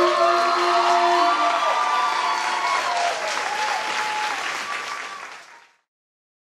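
Audience applauding at the end of a song, with some calls from the crowd, while the last held chord of the backing music dies away about a second in. The applause fades out just before the end.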